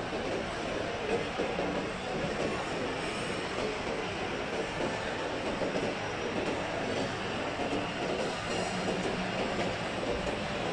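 Steady indoor shopping-mall ambience: a constant, reverberant hubbub spread across low and middle pitches, with no single event standing out.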